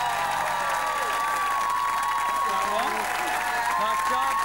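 Studio audience applauding and cheering, with whoops and long high held calls, just after a live pop song ends.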